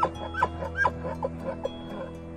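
A run of short yelping animal calls, about two a second and growing fainter, over background music with sustained held notes.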